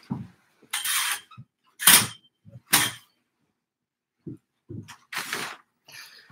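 A window shade being pulled closed: four short bursts of sliding noise, with a few soft low thumps between them.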